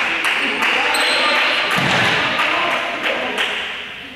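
Echoing hubbub of a group playing a running game in a sports hall: overlapping voices and shouts, quick footfalls and sharp knocks, with one heavy thump, like a ball hitting the floor, about two seconds in. The noise dies down near the end.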